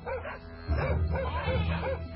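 Dogs barking in quick succession over a low steady hum.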